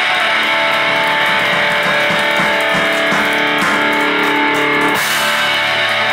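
Live hard rock band playing: distorted electric guitar, bass and drums holding chords. About five seconds in the held notes break off and a bright cymbal-like wash rings on as the song ends.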